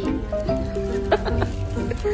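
Background music, with a man laughing hard in high, drawn-out whoops.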